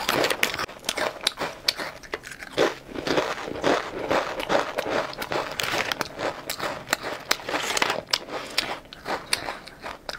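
Thin, crisp potato chips being bitten and chewed close to the microphone: a dense run of irregular crunches and crackles.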